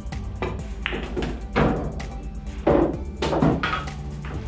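Pool balls knocking over background music: the cue tip strikes the cue ball, balls clack together and the orange object ball drops into the corner pocket, a few sharp knocks between about one and three and a half seconds in.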